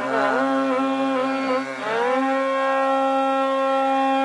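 Carnatic classical music in raga Pantuvarali, voice and violin: a melody with wavering gamaka ornaments for about two seconds, then a glide up into a long held note over a steady drone.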